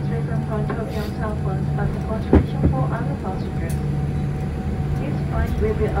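Airliner cabin noise while taxiing: the jet engines run at a steady low hum under the murmur of voices in the cabin. Two sharp clicks come close together about two and a half seconds in.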